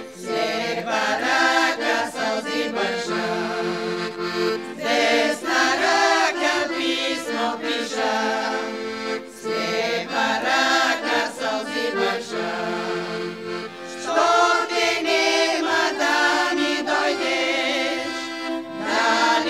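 Women's vocal group singing a song together, accompanied by an accordion.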